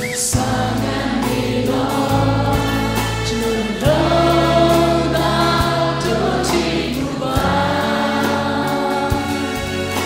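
A gospel worship song sung in Burmese by a live band: a male lead singer with backing singers, over strummed acoustic guitar and a sustained bass line.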